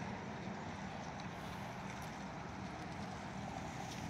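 Steady, faint low rumble of distant road traffic, with no single vehicle standing out.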